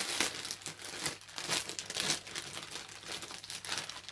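Clear plastic bag around a folded T-shirt crinkling irregularly as hands grip and handle it.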